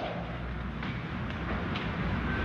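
Room tone: a steady low hum and hiss, with two faint knocks, one near the middle and one near the end.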